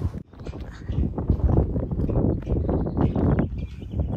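A hiker's footsteps on a dry dirt trail: a quick, irregular run of steps beginning a moment in.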